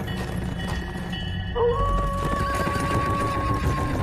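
Horse hoofbeats and a horse whinnying over background film music. A long held tone comes in about a second and a half in and sinks slightly near the end.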